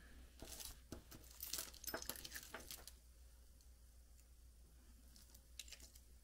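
Faint clicks of jewelry pieces and crinkling of plastic bags as hands sort through a pile of costume jewelry. The clicks come thick for the first few seconds, then a quiet stretch, with a couple more clicks near the end.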